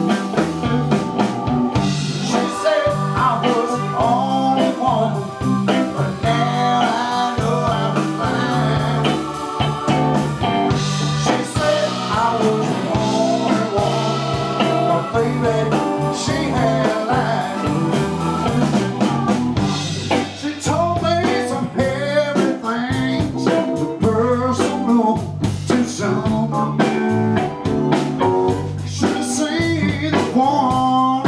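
Live blues band playing: electric guitar, electric bass, drum kit and keyboard, with a steady beat.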